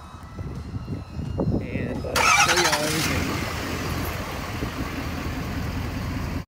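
A vehicle engine starting: a sudden loud burst about two seconds in, then running steadily, over a low rumble of microphone handling.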